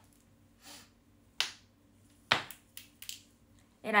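Two sharp clicks about a second apart, followed by a few fainter ones, with a soft breath-like hiss before them and a faint steady hum underneath.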